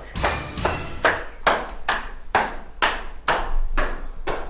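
Footsteps climbing a tiled staircase in hard-soled shoes, about two sharp steps a second at an even pace.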